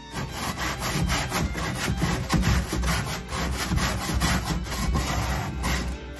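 Hand saw cutting through a faux stone wall panel in quick back-and-forth strokes, a steady run of rasping saw strokes.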